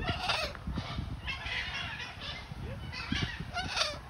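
Blue-and-yellow macaw giving a series of short, harsh squawks, about six in four seconds.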